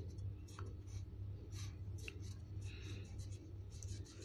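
Felt-tip marker writing on notebook paper: a run of short, irregular scratchy strokes as letters are drawn.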